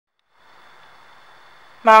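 Faint room tone: a low hiss with a thin, steady high-pitched whine, starting after a moment of dead silence. A narrating voice begins near the end.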